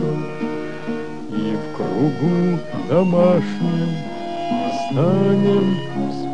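A man singing a slow song in phrases, with instrumental accompaniment.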